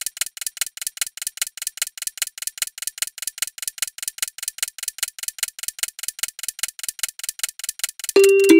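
Clock-ticking sound effect counting down a ten-second answer timer: fast, even ticks, several a second.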